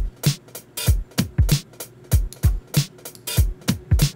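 Programmed hip-hop drum beat played by Reason's Drum Sequencer at 96 BPM: deep kicks that drop in pitch, snare hits and closed hi-hat ticks in a repeating pattern. Its shuffle is turned up, which gives the hats and snares a swung feel.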